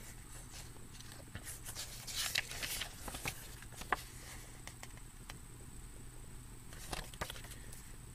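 Faint rustles and soft taps of a glossy paper booklet being handled as its pages are turned, a few at a time, over a low steady hum.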